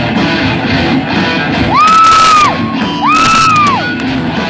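Live rock band playing with electric guitars, amplified through a PA. About halfway through and again near the end, two long high notes each slide up, hold and slide back down, louder than the rest of the band.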